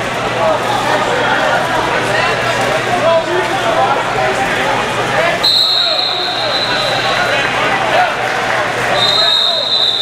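Many overlapping voices in a large gym, with two steady, high-pitched whistle blasts: one about a second long just past halfway through, and another starting near the end.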